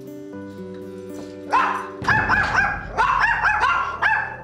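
Two small white dogs barking, a quick run of repeated barks that starts about a second and a half in, over steady background music.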